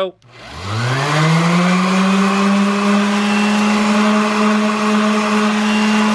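DeWalt random orbital sander with 80-grit sandpaper starting up about half a second in, its pitch rising over about a second, then running steadily. Its whine is mixed with a hiss as the pad grinds the edge of a butter knife.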